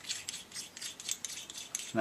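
A stainless steel Allen bolt being screwed by hand into an Oberon foot peg, its Loctite-coated threads and the metal parts giving a run of faint, short scratchy rubbing sounds.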